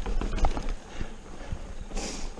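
Mountain bike rattling and knocking as it rolls over sandstone slickrock ledges, a string of irregular clunks over a steady low rumble of wind on the camera's microphone.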